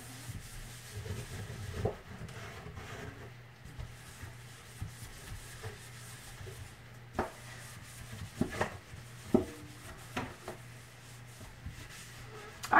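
A sponge scrubbing a stainless steel kitchen sink, soft rubbing broken by several sharp taps and knocks on the metal. A faint, steady low hum runs underneath.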